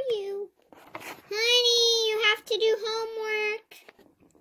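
A child's voice singing or vocalizing long, held notes at a nearly steady pitch: one note about a second long, then a short break and a second, wavering note.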